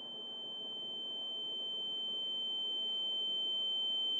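A single steady, high-pitched electronic tone like a long beep, held on one pitch and growing slowly louder, over a faint hiss.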